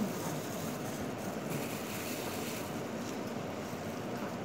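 A steady rushing noise, with a short louder sound at the very start.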